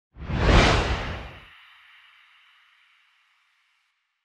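Whoosh sound effect for a logo reveal: a rush that swells and peaks under a second in, with a deep rumble underneath that cuts off at about a second and a half. A thin, high ringing tail then fades away over the next second or so.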